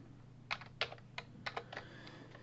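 Computer keyboard typing: about seven faint, separate keystrokes at an uneven pace.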